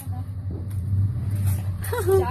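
Steady low rumble, with a voice starting near the end.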